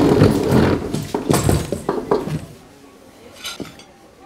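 Animal-like vocal noises mixed with the shuffling, knocks and tableware clinks of diners sitting down at a laid dinner table. The noise stops after about two and a half seconds and the rest is much quieter.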